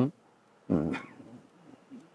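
A man's short hesitation sound, a falling 'um', in a pause in his speech, followed by a faint trailing murmur.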